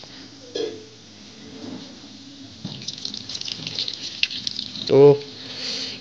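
A short knock about half a second in, then from about halfway through, tap water running and splattering over a tomato held under the stream into a ceramic washbasin.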